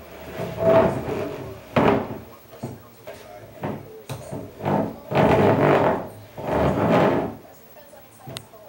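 IKEA side table's legs scraping and bumping across a hardwood floor in several pushes, the loudest about five and seven seconds in, mixed with a baby's voice.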